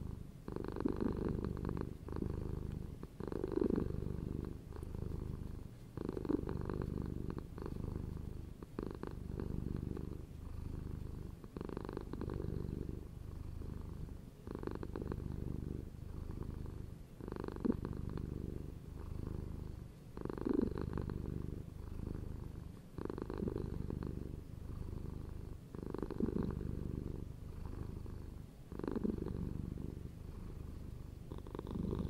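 A cat purring steadily, the purr swelling and easing in a slow rhythm about once every three seconds as it breathes in and out.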